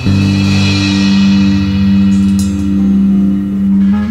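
Loud live rock band with electric guitar, bass and drums. A sustained chord rings out for about four seconds over a crash cymbal that is struck at the start and fades, with another sharp cymbal hit about halfway through.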